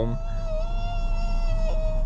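A voice holding one long, high, slightly wavering note for almost two seconds, like a hum or drawn-out wail, over a steady low hum inside the car.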